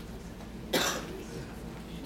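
A single short cough about a second in, over a low steady room hum.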